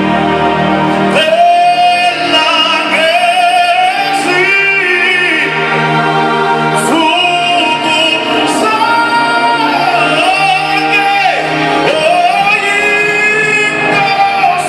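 Singing with musical accompaniment in a large hall: a lead voice holds long notes that slide up and down between pitches over steady low sustained chords.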